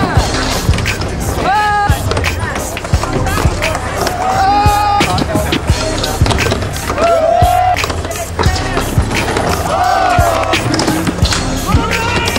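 Skateboards rolling, popping and landing on a skatepark ramp, mixed with a music track that has a steady beat and a vocal line.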